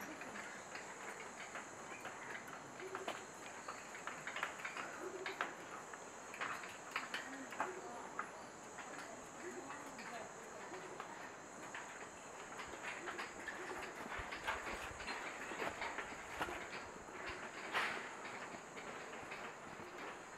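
Footsteps clattering on the metal-grating deck of a suspension footbridge, a string of irregular clicks and knocks, with a steady high-pitched hum behind them.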